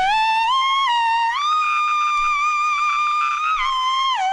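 Hard funk-rock music: a single high lead note slides up in small steps, holds steady for a couple of seconds, then dips slightly, with only faint backing behind it.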